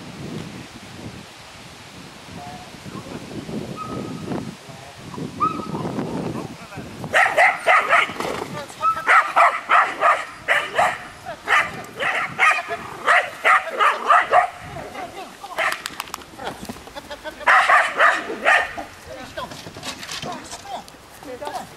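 A young Mudi herding dog barking in quick runs of short, high barks, several a second, starting about seven seconds in and continuing with brief pauses until near the end.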